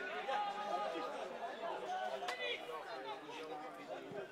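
Overlapping chatter of spectators and players' voices at an outdoor football pitch, with one sharp knock about two seconds in.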